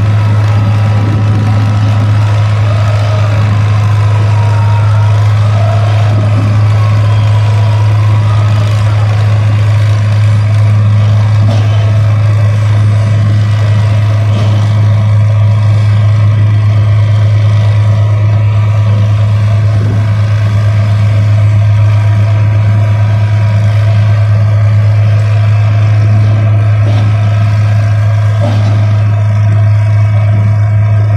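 Piling rig running with a loud, steady, deep machine drone that does not let up, with a faint wavering whine above it in the first several seconds.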